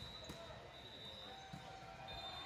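Volleyball struck by hand in a large gym: sharp hits right at the start and again about a second and a half in, with players' voices calling out over the play.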